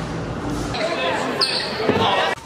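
Rushing handling noise, then a basketball bouncing on a gym floor among voices that echo in a large hall, with a sharp knock near the end.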